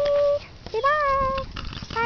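Beagle whining: two high, drawn-out whines, a short one at the start and a longer, slightly wavering one about a second in.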